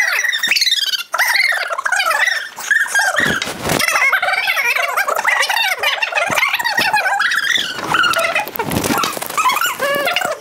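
High-pitched, wavering vocal sounds without words, much like a dog's whining and yelping, from a person.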